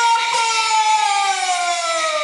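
A single long held note from a Taiwanese opera performance, sliding slowly and smoothly down in pitch through the whole phrase.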